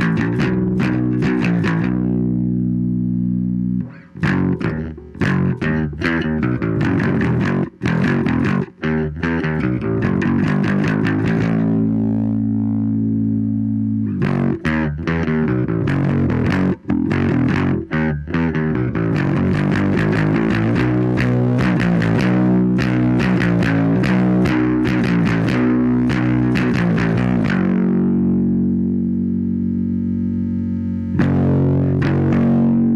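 Fender Mustang electric bass played through the Dogman Devices Earth Overdrive pedal into a Fender Rumble Studio 40 amp: an overdriven bass line of held and picked notes, with a few short stops about four to nine seconds in and busier playing later, ending on a long held note.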